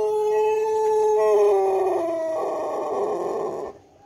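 Pelung rooster's long, drawn-out crow, held on one steady pitch, then dipping slightly and turning rough and hoarse before cutting off suddenly near the end.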